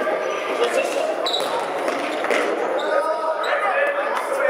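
Indoor youth football in a large sports hall: children and spectators shouting and calling over one another, with the ball thudding as it is kicked and bounces on the hall floor.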